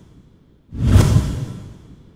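Whoosh sound effect of an animated logo ident: the tail of one swoosh fades out, then a second deep swoosh hits about two-thirds of a second in and dies away over the following second.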